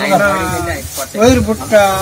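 Several people's voices talking and calling out over one another, with a louder drawn-out call near the end.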